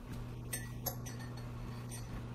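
Two light clicks as a bowl of chopped fruit scraps is picked up and handled, over a steady low hum.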